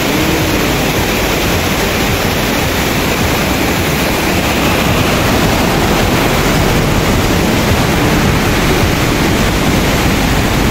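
Fast, silt-laden mountain stream rushing in white water over rocks: a steady, loud wash of water noise that does not change.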